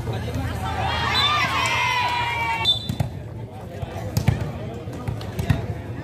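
High-pitched shouting and calling for about the first two and a half seconds, then several sharp smacks of a volleyball being played in a rally.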